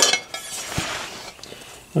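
A sharp metallic clink, then about a second of rustling and light rattling from handling the aluminum skid plate and its mounting hardware.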